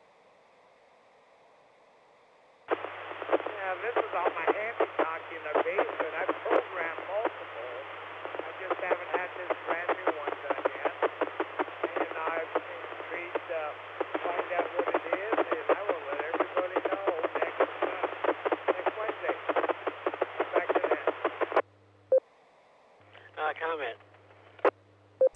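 An amateur radio operator's voice received over the club's FM repeater, sounding thin and narrow like radio audio, with a faint steady low tone around 100 Hz underneath, the repeater's sub-audible CTCSS tone. The transmission starts after a couple of seconds of silence and cuts off sharply near the end, followed by a brief second burst.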